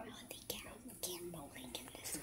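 A child speaking softly in a whisper, close to the microphone.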